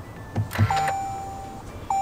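Toyota Vellfire's electronic beep as the push-start button is pressed to switch the power on: a soft click, then a steady beep lasting about a second, and a second short beep near the end.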